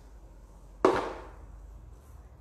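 A single sharp knock on the worktop a little under a second in, fading quickly.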